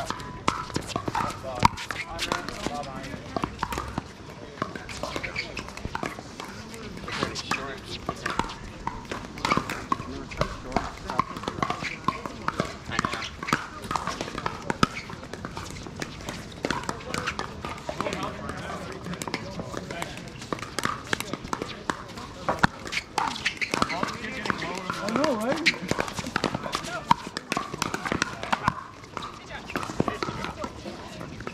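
Pickleball paddles hitting plastic balls: irregular sharp pops from this and neighbouring courts, with players' voices in the background.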